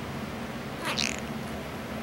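A cat giving one short, high-pitched meow that rises in pitch about a second in, quieter than the voice around it: the cat's weak 'sick meow'.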